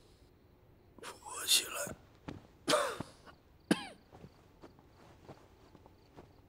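A sick man coughing in three hoarse bursts, about a second apart, the last one short and sharp.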